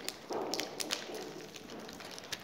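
Faint, scattered clicks and crackles of plastic snack wrappers being handled around packaged snack cakes.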